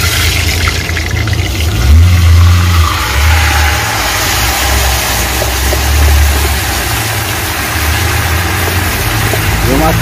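Raw chicken pieces hitting very hot lard in an aluminium pot and sizzling hard: the hiss starts suddenly and slowly dies down as the frying settles. An uneven low rumble runs underneath.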